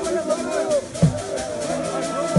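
A crowd of voices singing a church song with a deep drum beat, one heavy stroke about a second in.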